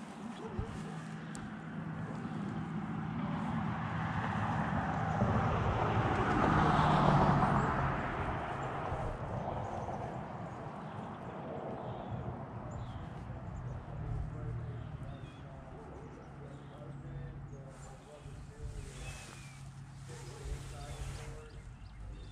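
A vehicle crossing the road bridge overhead: a rush of tyre and road noise that swells to its loudest about seven seconds in, then fades away. A steady low hum runs underneath.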